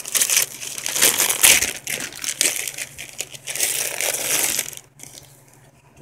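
Gift wrapping paper and tissue paper being torn open and crumpled by hand, a run of loud rustling rips that stops about five seconds in.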